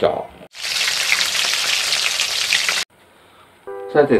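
A steady crackling hiss, like sizzling, lasting about two and a half seconds and starting and stopping abruptly.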